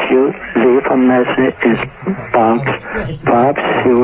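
A man's voice speaking in a recorded telephone message, thin and narrow as heard through a phone line.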